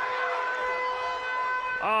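Stadium full-time hooter sounding one long steady note, signalling the end of the 80 minutes of play, over crowd noise.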